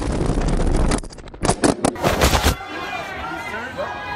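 Smartphone tumbling down a stairwell: about a second of loud rushing, scraping noise, then a quick series of sharp knocks as it strikes the stairs. It cuts off suddenly, and a man's voice follows.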